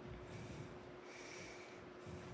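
Faint breath noise close to a headset microphone, over a steady low electrical hum.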